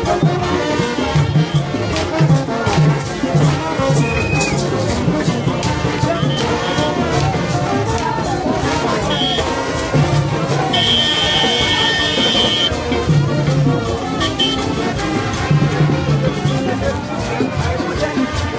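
Haitian rara band playing live in the street: brass horns and repeated low horn notes over steady percussion and shakers, with crowd voices mixed in.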